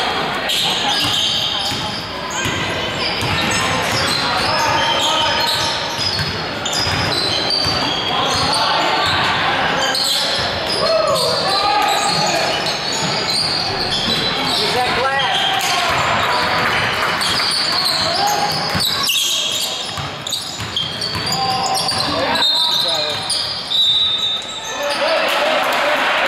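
Live basketball game in a large gym: sneakers squeaking on the hardwood floor, the ball bouncing, and indistinct shouts and chatter from players and spectators.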